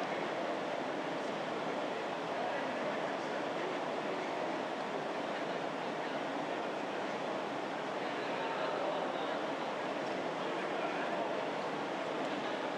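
Steady, indistinct murmur of many people talking at once across a large legislative chamber, with no single voice standing out.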